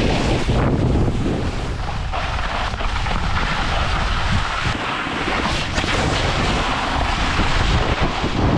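Wind buffeting the microphone of a fast-moving follow camera, mixed with a snowboard scraping and hissing over the snow.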